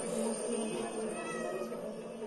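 Field-recording playback from a sound sculpture's small speakers and amplifier: a dense mid-range murmur over a steady low tone, with a few short high tones sliding in pitch about a second in.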